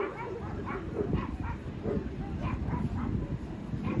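A dog yapping in short, high barks that come in quick runs of two or three, over a steady low rumble of outdoor background noise.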